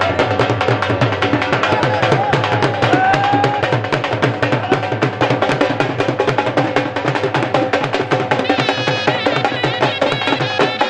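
Two dhols, double-headed barrel drums struck with sticks, played in a rapid, driving beat, with a pitched melody line over them that wavers near the end.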